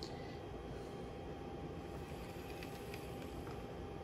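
Faint steady running of a Kato-built Atlas N scale EMD SD7 model locomotive: its small electric motor and wheels on the track, with a thin steady whine, running smoothly.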